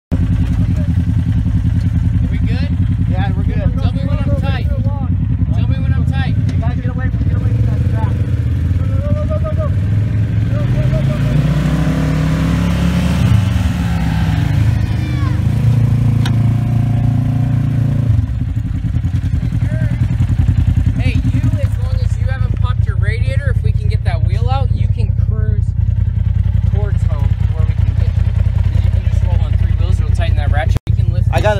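A side-by-side UTV engine running steadily, revving up and back down about ten seconds in as it takes up a tow strap to pull a wrecked UTV. Voices talk over it.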